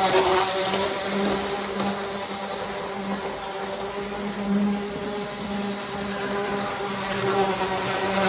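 Waterman standard-gauge Burlington Zephyr model train running on its track, giving a steady electric buzz with running noise. It is loudest as it passes close at the start and grows louder again near the end as it comes round.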